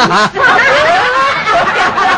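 Several men laughing and snickering mockingly, in loud pulsing bursts of voiced laughter.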